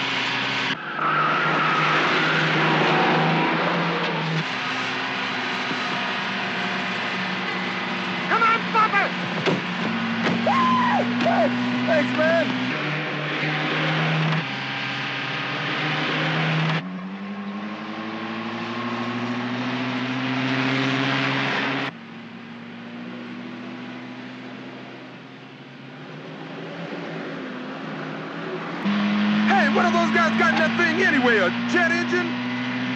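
Land Rover engine running hard under acceleration, its pitch stepping down at gear changes and climbing again as it revs. The sound jumps abruptly several times, and a few brief squealing sounds come in near the middle.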